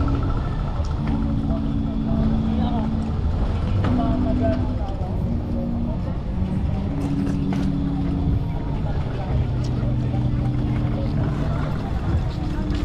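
Outdoor park ambience: a steady low rumble with distant, indistinct voices.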